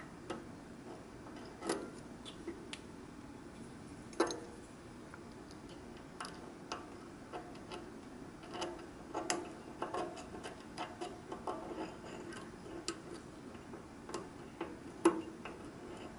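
Pin tumbler lock being single-pin picked: irregular small metallic clicks and ticks from the pick working the pins under tension, a few louder clicks among them as pins set.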